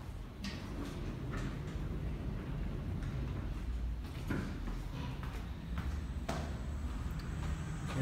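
Footsteps on a hard floor, a few sharp, irregular taps, over a steady low rumble.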